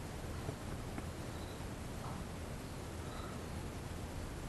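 Quiet room tone: a steady low hum with a few faint, short high chirps and tiny ticks.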